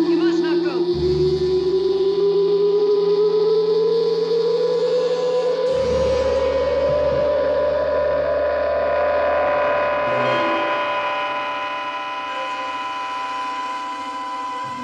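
Eerie sci-fi soundtrack: a sustained tone slowly rising in pitch over about ten seconds above a steady high hum, with deep rumbling swells underneath and a layer of high shimmering tones building near the end.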